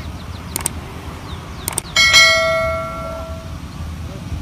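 Sound effect of an on-screen subscribe-button animation: a mouse click about half a second in, another just before the two-second mark, then a bright notification-bell ding that rings out for about a second and a half. A steady low rumble runs underneath.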